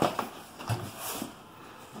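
Cardboard product boxes being handled and set down on a table: a couple of sharp knocks at the start, then a few soft thumps and scrapes.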